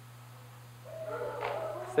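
A hushed room with a steady low electrical hum. About a second in, soft wordless children's voices rise as they react to the picture.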